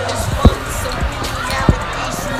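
Background music and voices in a busy room, with two sharp low thumps about a second apart, the second near the end.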